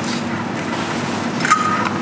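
Steady background noise with a low hum, and a click followed by a short, steady high tone about one and a half seconds in.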